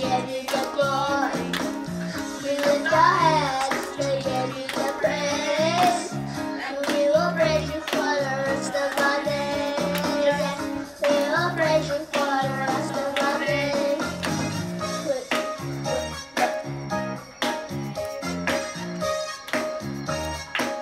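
Children's praise team singing a worship song in unison over an instrumental backing track with a steady beat.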